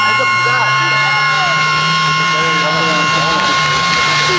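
A distant rally car engine droning, rising slightly in pitch during the first second or two and then holding steady, under the chatter of a crowd of spectators.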